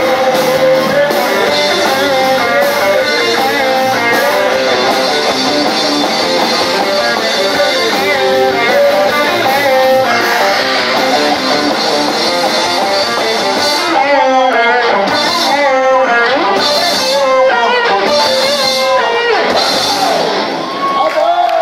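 Live rock band playing: strummed acoustic guitar and electric guitar over bass and drums, with a man singing into the microphone.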